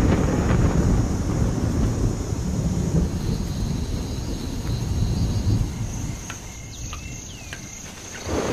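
Rolling thunder rumbling low and deep, dying away over the last two seconds, with a steady high insect drone above it.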